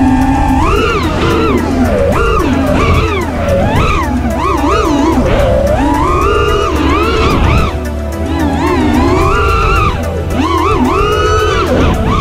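Background music over the whine of an FPV racing quadcopter's brushless motors (Hyperlite 2207 2122kv spinning Azure tri-blade props). The whine rises and falls steeply as the throttle is worked through the turns.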